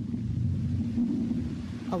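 A steady low rumble with a faint hum running through it; a man's voice begins right at the end.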